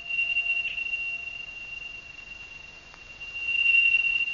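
A steady, high-pitched electronic tone, like a pure sine tone, holds one pitch throughout and swells louder near the end. A fainter, lower tone sounds with it for the first second or so and then fades away.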